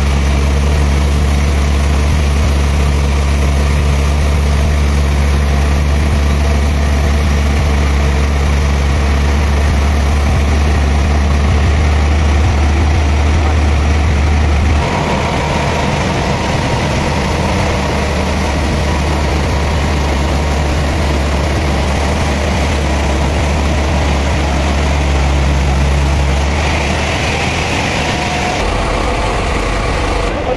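Large log band sawmill machinery running with a steady low drone. The drone changes character about halfway through and again shortly before the end.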